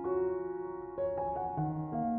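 Background music on piano: a slow line of held notes, a new one struck about every half second.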